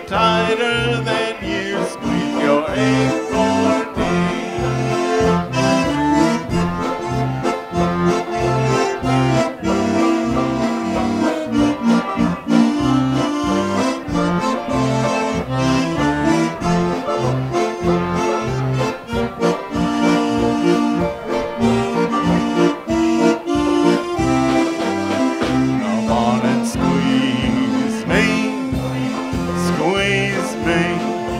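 Concertina playing an instrumental break between sung verses: a bellows-driven reed melody over a steady oom-pah bass rhythm.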